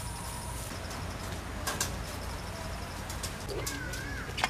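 Faint bird calls over a steady low rumble of outdoor ambience, with a couple of sharp clicks near the middle.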